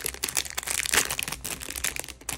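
Thin clear plastic sleeve crinkling and crackling as it is pulled open and slid off a cardboard pin card.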